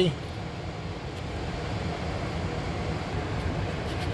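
Steady low background noise, an even hum and hiss with no distinct events.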